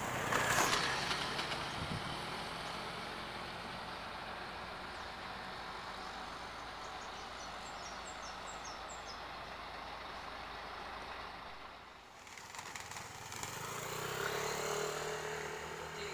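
Diesel engine of an Isuzu cargo truck idling steadily, with a short loud hiss about half a second in. Near the end the sound dips and a different steady hum takes over.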